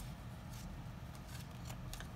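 Trading cards being handled and laid down on a playmat: a few faint, light clicks and slides over a low steady hum.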